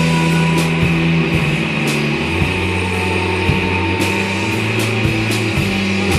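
Shoegaze band playing live: bass, guitars and drums, with cymbal hits throughout. The bass drops to a lower held note about two seconds in.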